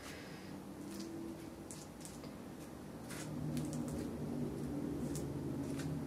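Palette knife mixing thick paint on a plastic palette and working it over a stencil: faint, soft squishing with a few light clicks and scrapes. A low steady hum sits underneath, a little louder from about halfway.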